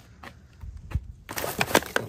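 Plastic produce wrap crinkling and a cardboard box being handled: a soft knock about a second in, then a quick run of sharp crackles and taps.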